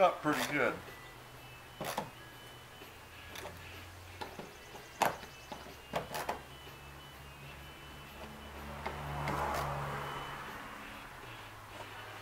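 A few scattered sharp clicks and knocks from a screwdriver and stainless screws being snugged down by hand into a plastic kayak's fittings, with a longer, softer swell of noise about three-quarters of the way through.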